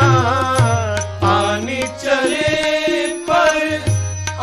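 Indian devotional music with a gliding melody over a steady low bass line and tabla-like drum strokes, played between the sung lines of a Maithili wedding gaari.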